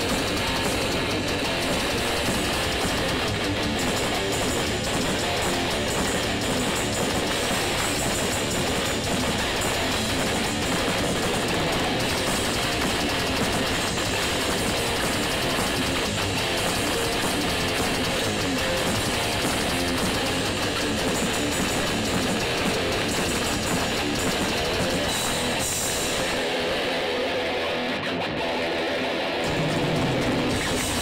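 Grindcore/death metal band playing live through a club PA: distorted electric guitars, bass and fast drums in a dense, loud wall of sound. Near the end the low end drops out for a few seconds in a break, then the full band comes back in.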